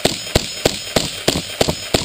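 A rapid, regular series of sharp knocks or shots, about three a second, with a short ring after each and an occasional doubled strike.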